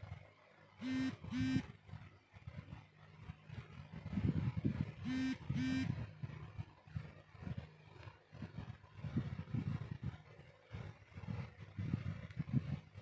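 Two pairs of short, pitched beeps, one pair about a second in and another about four seconds later, each a quick double note, over a low background rumble.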